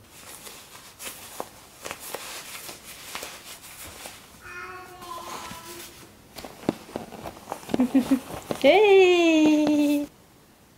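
Rustling and scattered light clicks of a snap-fastened cloth diaper being handled and put on a baby on a bed. Near the end comes a loud, long vocal sound that rises sharply, then holds a slowly falling pitch before cutting off.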